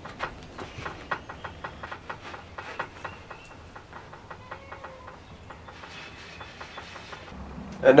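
Paracord being wrapped and pulled around a metal table frame: handling noise of light clicks and rustling, thickest in the first few seconds, then softer rubbing.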